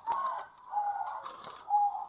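Zebra doves (perkutut) cooing in an aviary: short, even-pitched notes, one about a second in and another near the end.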